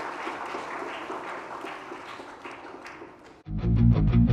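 Audience applauding for about three seconds, then cut off suddenly near the end by loud guitar music with heavy bass.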